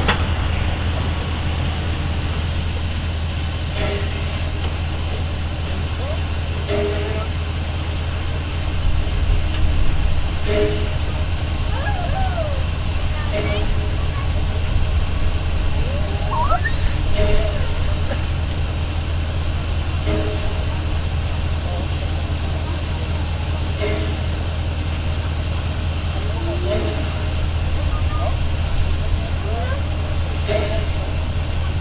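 SJ E-class steam locomotive E 979 standing with steam up: a steady low hum and hiss, with a short tone repeating about every three seconds.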